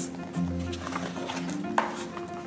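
Soft background music with sustained, held notes and a low bass note about half a second in. Near the end, a short paper swish as a picture-book page is turned.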